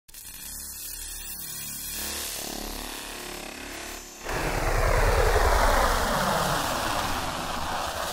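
Electronic industrial music intro: a low synth drone with a pulsing pattern, then about four seconds in a sudden loud rushing noise swell over a deep rumble, with a sweeping, engine-like band of pitch.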